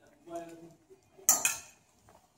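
A clothes hanger knocked against a metal garment rail: one sharp metallic clack with a brief ringing tail, a little past the middle.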